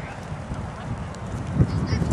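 Football players' running footsteps on a grass field, a rhythmic run of dull thuds, with one louder thump about a second and a half in.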